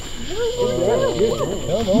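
People's voices talking over a steady, high-pitched drone of night insects.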